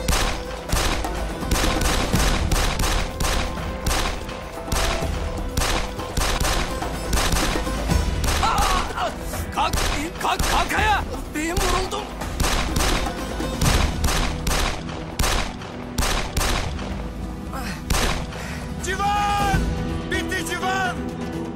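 A pistol gunfight with dozens of handgun shots fired in quick succession, roughly two a second, kept up throughout, over background music.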